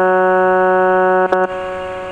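Toy electronic keyboard holding one steady, organ-like note. The note breaks and is struck again briefly about 1.3 seconds in, then is released and fades away.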